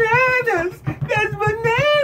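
A man's high, wordless falsetto voice sliding through several long wavering notes over a quick, steady run of plucked notes on an Ibanez TMB100 electric bass.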